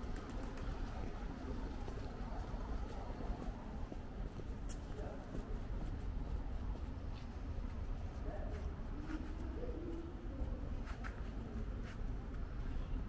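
Outdoor city ambience: a steady low rumble, with faint soft low calls in the second half and a couple of light clicks.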